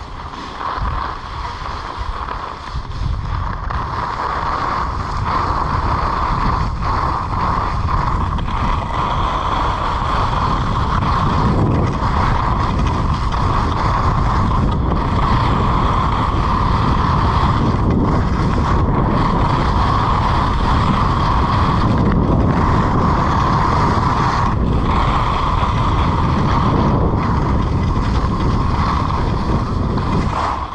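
Wind buffeting an action camera's microphone during a ski run down a groomed piste, mixed with the steady hiss and scrape of skis on hard snow. It grows louder about five seconds in and then holds steady.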